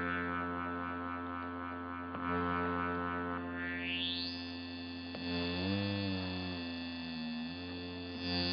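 Analog synthesizer drone held on one key while a panel knob is turned: the tone brightens in a rising sweep a few seconds in and stays bright. Past the middle the pitch wobbles up and down, then briefly drops to a lower note near the end.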